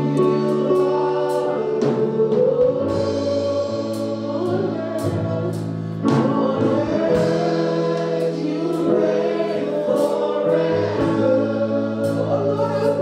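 Live gospel praise-and-worship music: women's voices sing over sustained chords and steady percussion.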